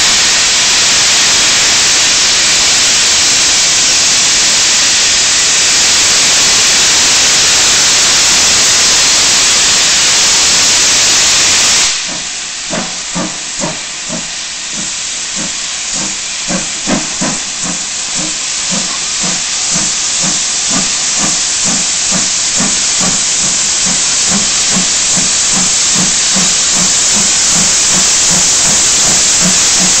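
A loud steady hiss cuts off suddenly about twelve seconds in. After it come the exhaust beats of ex-GWR 4300 Class 2-6-0 steam locomotive No. 5322 working along the line: a regular chuffing, a few beats a second, growing steadily louder as it approaches.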